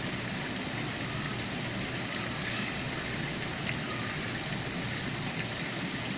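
Steady rush of running water in a koi pond, an even hiss with no break.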